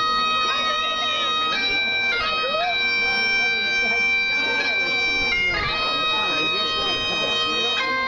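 Bagpipes playing a slow, hymn-like tune: long held melody notes that change every second or few over a steady drone.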